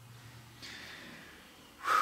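A person's breath in a pause between speech: a faint breath about half a second in, then a short, louder, sharp breath near the end.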